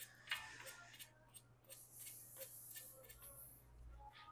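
Near silence with a few faint clicks, the clearest shortly after the start, as carom billiard balls roll to a stop on the table.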